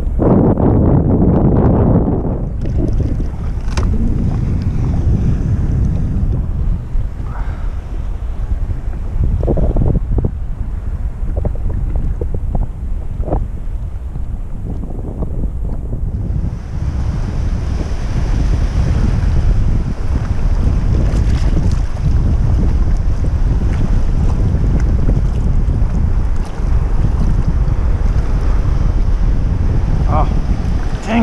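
Wind buffeting the camera microphone as a heavy low rumble, with water lapping and small splashes against the board. The water hiss grows louder about halfway through.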